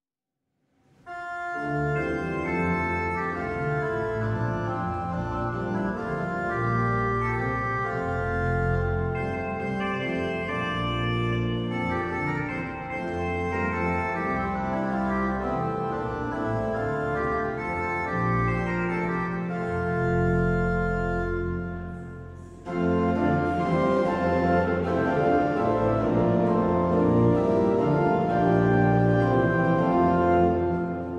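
Large church pipe organ, after a second's silence, playing sustained chords to introduce a hymn, full and reverberant in a stone cathedral. It breaks off briefly about three-quarters of the way through, then starts again fuller and louder as the hymn itself begins.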